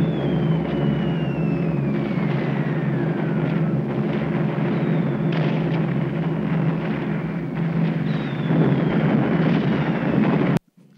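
Heavy bomber engines droning steadily on the soundtrack of WWII archive film, played through a hall's speakers, with several long whistles falling in pitch. The sound swells near the end.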